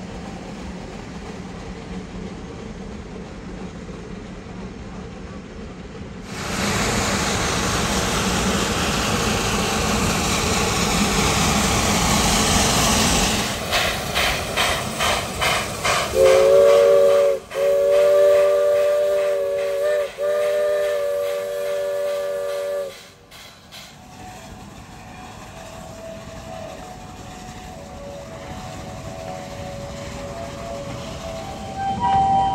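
Shay geared steam locomotive: a sudden loud hiss of escaping steam lasting several seconds, then a run of quick exhaust chuffs, then its steam whistle sounding a chord for about seven seconds, broken twice for an instant.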